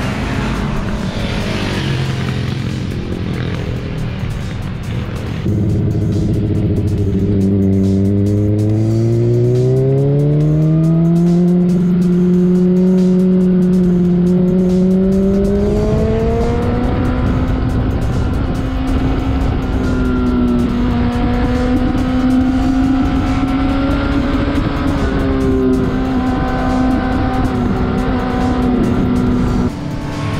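Sport motorcycle engine heard at speed on a race track. A few seconds in it comes in loud, its revs climb smoothly over several seconds, then hold fairly steady for most of the rest.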